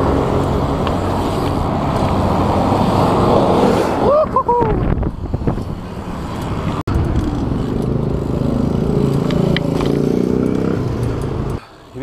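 Street traffic running close alongside a moving bicycle, with wind rushing over the microphone. A short pitched sound that rises and falls comes about four seconds in, a vehicle engine hums through the second half, and the noise drops away just before the end.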